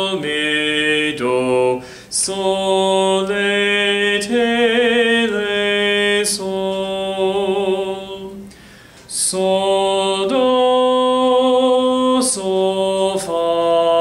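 A man singing a melodic minor sight-singing melody unaccompanied on solfège syllables, holding each note for about a second, with a short break about eight seconds in.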